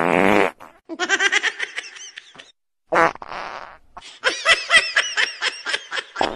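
Two short, buzzy fart noises about three seconds apart, each followed by a run of high-pitched giggling laughter.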